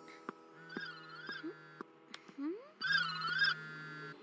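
Smartphone ringing for an incoming call: a warbling electronic ringtone sounds twice, about two seconds apart, each ring over a low steady buzz. Soft background music plays under it.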